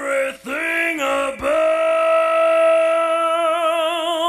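Background song: a singer sings two short phrases, then holds one long note from about a second and a half in, with vibrato widening near the end.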